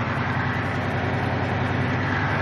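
Semi-truck's diesel engine running steadily at low speed, an even low hum heard from inside the cab.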